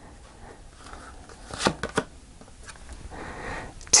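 Tarot cards being handled on a cloth-covered table: a card laid down and the next drawn from the deck, with two short sharp clicks about a third of a second apart near the middle.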